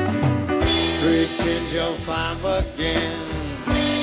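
A small band playing a slow country-blues song live: acoustic and electric guitars, cello and drums, with a wavering melody line that bends in pitch over the chords.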